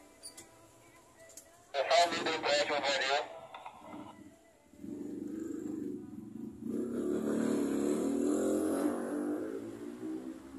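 A motor vehicle engine running, starting about five seconds in and growing louder for several seconds before fading near the end.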